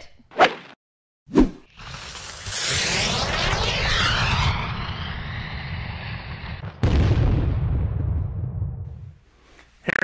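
Edited-in transition sound effects: a short knock, then a swelling whoosh with a swirling, fire-like rush that thins out after a few seconds, followed by a sudden boom about seven seconds in whose deep rumble fades over about two seconds.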